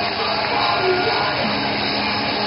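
A hard rock band playing live: amplified guitars, bass and drums in a loud, dense, steady wash, recorded from the audience in a large hall.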